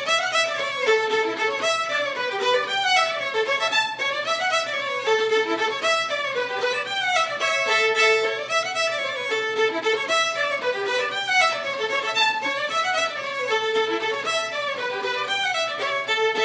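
A fiddle playing a fast Québécois reel: a continuous stream of quick bowed notes running up and down in rapid melodic phrases.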